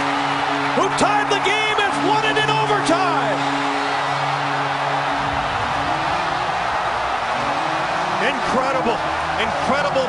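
Arena crowd cheering and whistling after an overtime goal, with a steady low goal horn sounding for about the first five seconds, then arena music with a stepping tune under the cheers.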